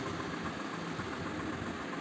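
Steady low background hum and hiss of room noise, with no distinct events.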